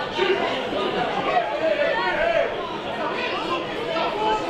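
Several people talking over one another at the ground: players' and spectators' voices mixing into chatter.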